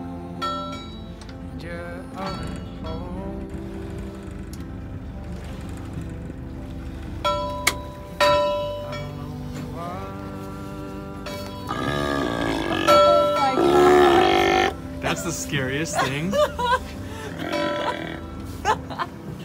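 Background music throughout, and from about two-thirds of the way through a group of sea lions roaring loudly for a few seconds, with a few more calls just after.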